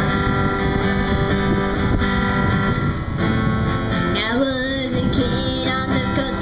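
Zager ZAD20CE acoustic-electric guitar strummed in a steady rhythm, with a boy's singing voice coming in about four seconds in.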